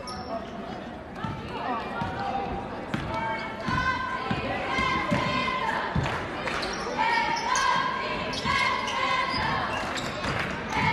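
Basketball being dribbled on a hardwood gym floor, a string of bounces, under the shouts and chatter of players and spectators echoing in the gym.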